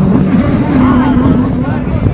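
A man's voice amplified through a loudspeaker, rough and wavering, over a heavy low rumble of wind on the microphone.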